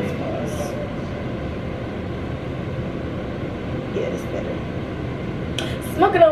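Steady, even whirring noise, like a ventilation fan or air conditioner running in a small room, with faint brief voice sounds twice.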